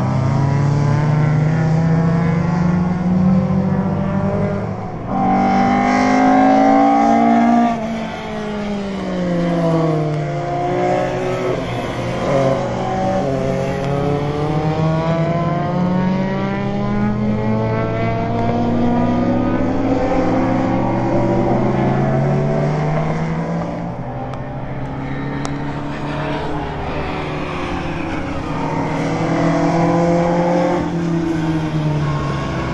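Several race car engines running hard at once, their notes overlapping and repeatedly rising under acceleration and falling on lifts and gear changes as the cars lap the circuit.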